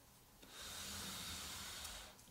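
A glass, metal-framed tarantula enclosure is slid across a foam floor mat, making a steady scraping hiss that starts about half a second in and lasts about a second and a half.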